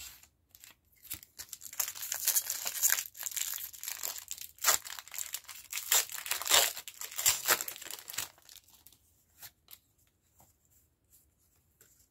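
A foil Pokémon TCG booster pack being crinkled and torn open: a busy run of crackling, rustling and tearing from about two seconds in until about eight seconds, followed by a few faint taps.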